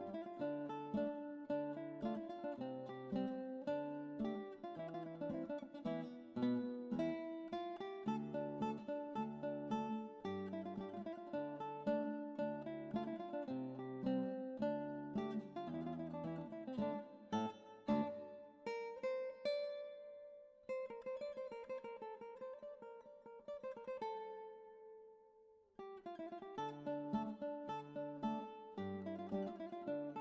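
Background early-music piece played on a plucked-string instrument, note after note in a steady flow. About 25 seconds in, one piece ends on a held note that fades away, and after a short gap a new piece begins.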